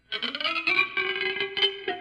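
Electric guitar improvising: it comes in suddenly just after a moment of silence, with a quick flurry of plucked notes over held, ringing tones.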